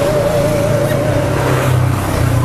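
Honda motorcycle engine idling steadily underneath the rider.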